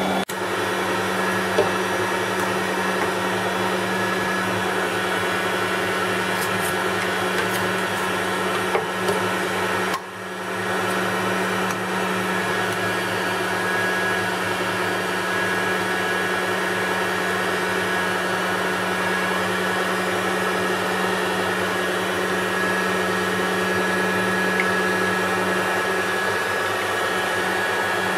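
Zelmer ZMM1294 electric meat grinder running steadily under load, driving mince through a sausage-stuffing nozzle into a gut casing. The motor hum dips briefly about ten seconds in, then returns.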